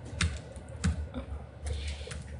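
Typing on a laptop keyboard: a handful of irregular keystrokes, with a quick run of them near the end.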